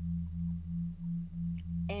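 A low, steady hum with a tone that pulses about three times a second, over a lower steady drone.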